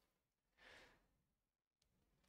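Near silence, with one faint breath drawn about half a second in.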